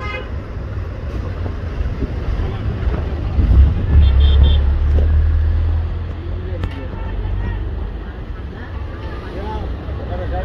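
Outdoor traffic noise: a low rumble that swells in the middle, with a short high horn toot about four seconds in.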